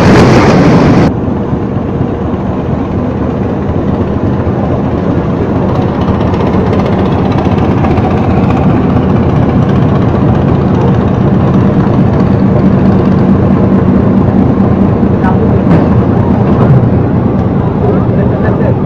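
A loud crashing noise with shouting cuts off abruptly about a second in. Then a boat's engine runs steadily under a constant rushing noise, with a low hum held at a steady pitch.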